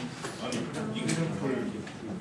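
Indistinct voices of several people talking at once in a classroom, the words not picked out.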